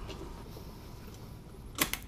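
Faint room noise, then near the end one short clack as the engine's valve cover is set down onto the cylinder head.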